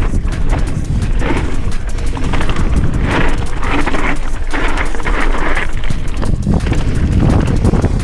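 Mountain bike rattling over a rocky singletrack descent: a dense run of sharp knocks and clicks from the frame and tyres on stones. Under it, wind buffets the camera microphone with a steady low rumble.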